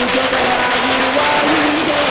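A string of firecrackers going off in a dense, rapid crackle, heard over music with a held, stepping melody.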